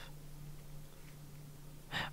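Quiet room tone: a faint steady low hum, with only a faint tick about halfway through.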